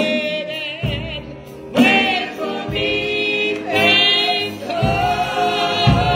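Gospel singing, long held notes with a wavering vibrato, over low beats about once a second.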